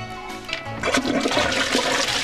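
A toilet flushing: rushing water that builds from about half a second in.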